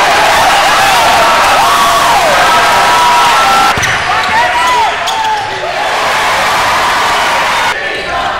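Basketball game sound in a gym: sneakers squeaking on the hardwood court and a basketball bouncing, over a loud crowd. The sound changes abruptly twice, near the middle and near the end.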